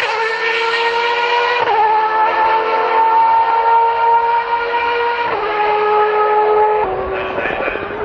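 Racing car engine at high revs, its high pitch holding steady and then dropping in steps about two, five and seven seconds in, as with gear changes.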